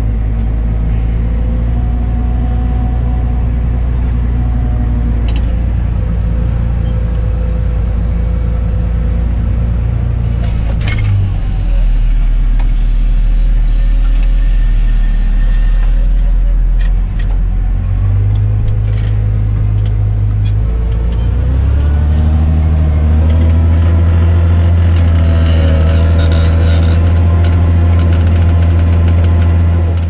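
Massey Ferguson 8470 tractor engine heard from inside the cab, running steadily under load while pulling an eight-furrow plough; its note shifts about eleven seconds in and again about twenty-two seconds in.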